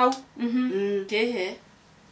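A woman's voice humming with the mouth closed, two level notes like an acknowledging "mm-hmm", between short bits of speech, then quiet.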